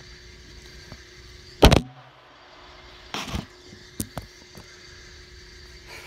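Bumps and knocks from the recording phone being handled and set in place: one heavy thump just under two seconds in, then a few lighter knocks about a second later, over a steady background hum.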